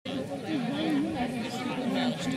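Voices chattering, several people talking over one another with no clear words.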